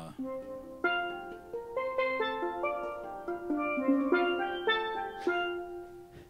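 A pair of steel pans played solo: a melodic phrase of single struck, ringing notes, starting about a quarter second in and dying away near the end.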